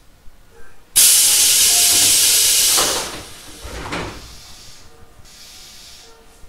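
Compressed air from a Tobu 800-series electric train's air system: a sudden loud hiss about a second in, lasting about two seconds, then two dull knocks as it dies away.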